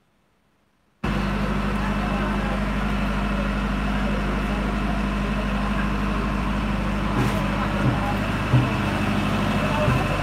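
Loud steady engine drone with a deep low hum, starting abruptly about a second in, with a few light knocks near the end.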